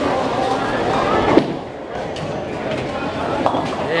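Voices and chatter in a bowling alley's large hall, with one sharp knock about a second and a half in.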